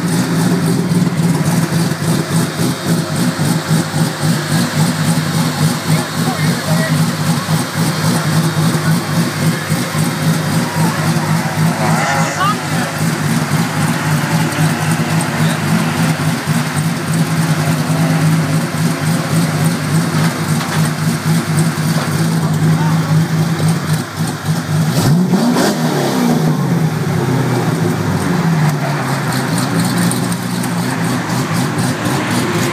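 Chevrolet LS3 6.2-litre V8 in a BMW E30 M3 running at a steady idle. Late on, it is revved once, the pitch rising and falling back to idle.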